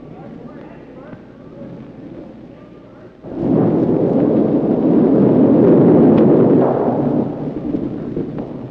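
A granite curling stone sliding down the ice, its rumble rising suddenly about three seconds in, holding loud and then fading near the end. Before it, faint voices murmur in the background.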